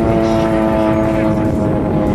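Propeller of a single-engine water-bombing plane droning overhead: a steady hum of several held tones.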